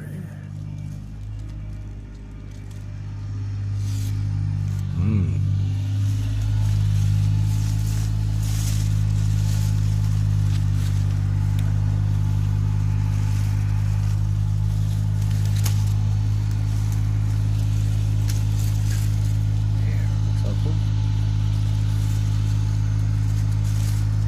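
A steady low engine hum that grows louder over the first few seconds, then holds level.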